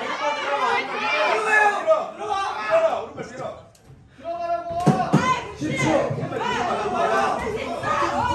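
Voices calling out and shouting around a kickboxing ring, too jumbled to make out, with a lull just before the middle. About five seconds in there are a couple of sharp smacks, blows landing in the exchange.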